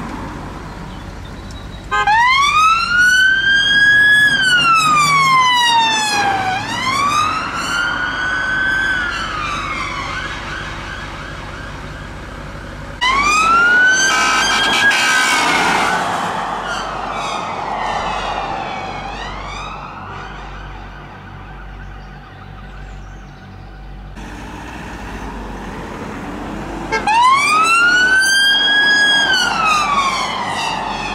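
Police car sirens wailing, each sweep rising and falling slowly over a few seconds, as three response cars pull out in turn. About halfway through, a harsher, rapid burst cuts over the wail.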